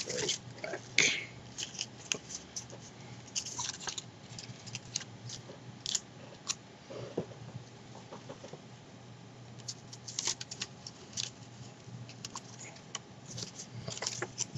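Paper being handled and pressed together: irregular crinkles, rustles and light taps scattered through, over a faint steady low hum.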